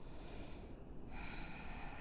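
A woman breathing audibly during a yoga lunge: a faint breath in, then a longer, louder breath out starting about a second in.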